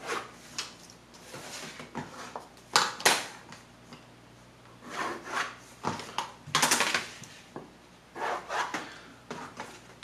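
Pencil scratching along paper as a pattern line is traced, with a wooden curve ruler and a plastic grid ruler sliding and being set down on the paper: intermittent rubbing and scratching with a few sharp taps.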